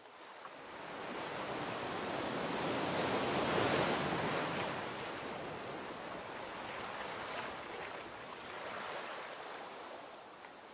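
Ocean surf: a wave swells and breaks about three to four seconds in, then draws back, with a smaller swell near the end.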